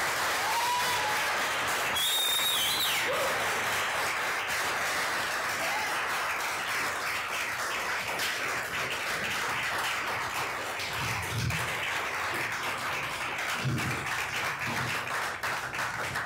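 Audience applause, steady and sustained, with a couple of whoops and a high whistle in the first three seconds.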